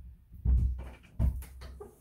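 Off-camera handling noise: two dull thumps about half a second and a second in, with light clicks and rustles in between, as a plastic toy figure is reached for and picked up.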